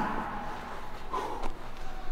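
A man clears his throat once, about a second in, against low room noise.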